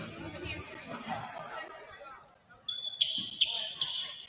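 Basketball sneakers squeaking on a hardwood gym floor, a quick run of short, sharp squeaks in the last second or so, over voices and chatter in the gym.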